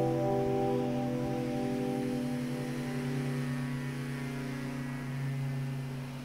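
Music: a held guitar chord with effects rings out and slowly fades away, its steady tones dying down over several seconds.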